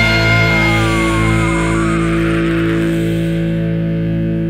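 Rock music: a distorted electric guitar chord held and left ringing, its higher tones slowly fading away toward the end.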